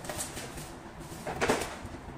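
Paper lid of an instant noodle cup being peeled back by hand, a short rustle about a second and a half in over a faint background hum.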